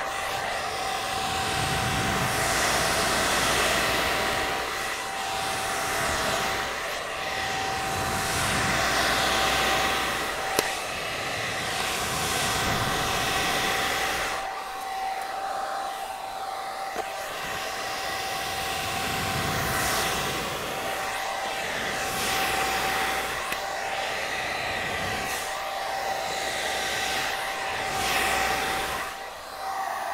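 Handheld hair dryer blowing, its air noise swelling and dipping as it is moved around a long beard, with a steady whine from the motor underneath. It switches off near the end.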